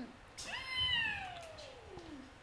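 A woman's long falling cry, a high wail that slides steadily down in pitch over about a second and a half.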